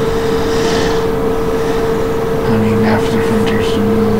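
A loud, steady hum on one unchanging pitch, with a low, muffled voice coming in about halfway through.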